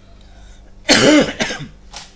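A person coughing loudly close to the microphone about a second in, with a smaller cough near the end.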